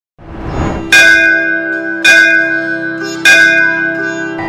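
A bell struck three times, about a second apart, each strike ringing on with clear, steady tones. A rising swell builds up just before the first strike.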